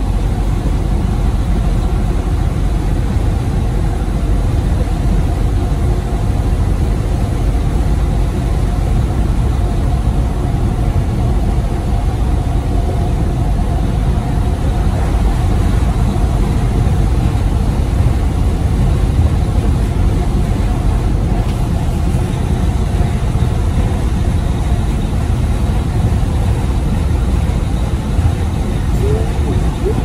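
Steady low engine drone and road noise heard from inside the cab of a Freightliner Cascadia semi-truck cruising at highway speed.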